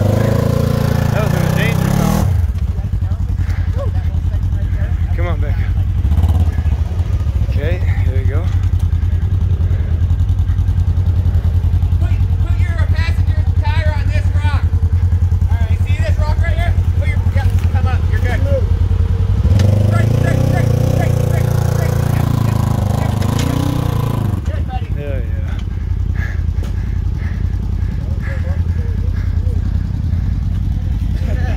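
Side-by-side UTV engines running steadily at low revs, growing louder for a few seconds about twenty seconds in.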